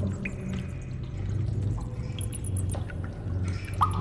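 Cave ambience sound effect laid over an edit: a low, steady drone with a few faint scattered water drips.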